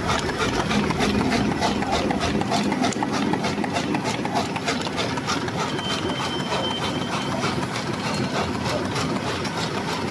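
Die-cutting machine running in production, feeding paper through its roller and onto its output conveyor: a steady, fast, even mechanical clatter. A brief faint high tone sounds about six seconds in.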